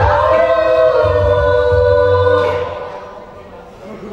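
A small mixed a cappella group singing in close harmony through microphones: sustained chords over a low bass part. The chord fades out about two and a half seconds in, leaving a short, much quieter lull.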